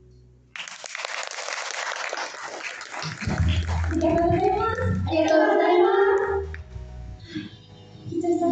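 A held final note fades, then about half a second in the audience bursts into applause and cheers. From about three seconds in, a young woman's voice comes over the PA microphones, over a low steady hum.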